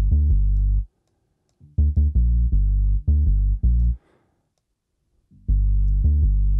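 Synth dub bass loop playing through the BassLane Pro plugin, its stereo harmonics deliberately exaggerated so the bass sounds wide and saturated. It comes in short runs of punchy notes: one ending just under a second in, a longer run from about two seconds to four, and another starting near the end, with silent gaps between them.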